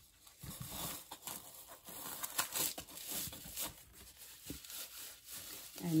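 A crew sock being stretched and slid over a styrofoam ball: irregular rustling and scratching of fabric rubbing against the foam and hands.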